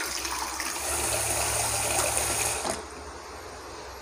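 Cloudy rice-washing water pouring from an aluminium saucepan of washed rice into a plastic bucket: a steady splashing stream that stops about two and a half seconds in.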